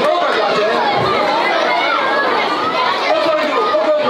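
A crowd of many children and adults chattering, with many voices overlapping and no single voice standing out.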